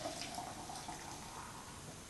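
Water pouring from an electric kettle into a glass jug of liquid detergent mix, a quiet steady stream that slowly fades as the jug is topped up.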